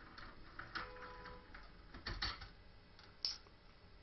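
Faint clicks and scraping of a key turning in a five-pin deadbolt lock cylinder and being worked out of the keyway. There are small clicks about a second in, a short faint squeak, a cluster of clicks around two seconds and one more click near three seconds. The key tends to stick in this lock.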